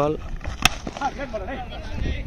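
Voices of players calling out across the ground, with one sharp knock about two-thirds of a second in.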